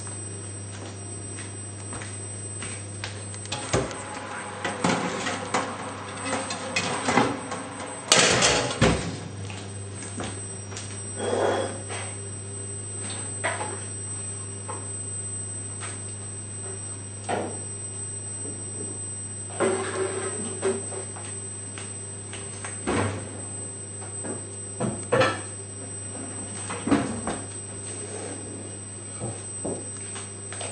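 Irregular kitchen knocks and clunks, the loudest about eight seconds in, as the oven is opened and the tray of potato wedges handled. Underneath, a steady low hum and the faint bubbling of cream sauce in a frying pan on a gas hob.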